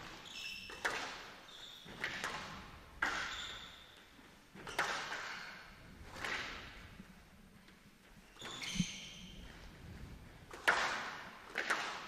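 Squash rally: the ball struck by the racket and hitting the court walls about every one to two seconds, each hit echoing in the hall, with short high squeaks of court shoes between strokes.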